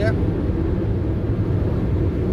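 Steady low drone of engine and tyre noise inside the cab of a vehicle cruising at motorway speed.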